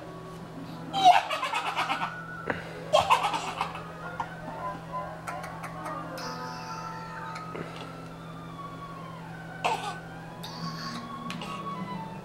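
Two bursts of high-pitched giggling laughter, one about a second in and one about three seconds in, over quieter music from a television.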